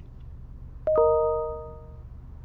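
A two-note 'ding-dong' chime, a higher tone then a lower one in quick succession, ringing out and fading over about a second, over a low steady hum.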